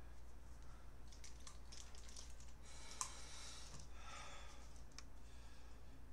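Faint clicking and rustling from a computer mouse being handled, with sharper single clicks about three seconds in and again near five seconds.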